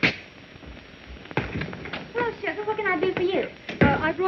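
A sharp thud right at the start and a louder one near the end, with a few lighter clicks and a short stretch of a high-pitched voice speaking in between.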